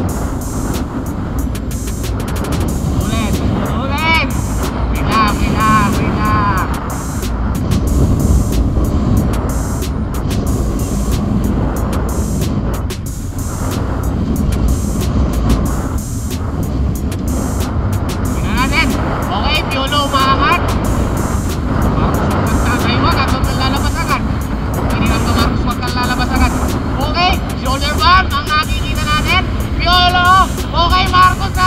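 Heavy wind buffeting on a bike-mounted action camera's microphone at racing speed, a steady low rumble throughout. Over it is background music with a singing voice, heard a few seconds in and again through the last third.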